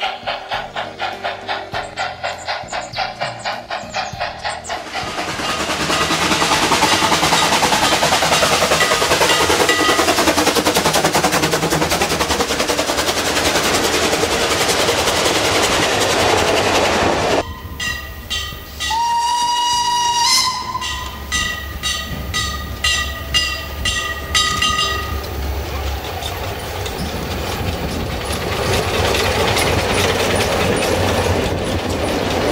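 Steam train sounds: a fast regular chuffing beat of about four to five strokes a second at first, then a long loud steady rush. This gives way to several steam whistle blasts, one gliding up in pitch, over rapid clicking wheel clatter.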